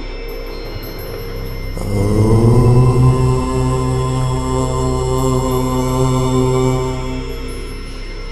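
A man's voice chanting one long, low "Om", starting about two seconds in and held on a steady pitch for about five seconds before fading. Underneath is a steady background drone.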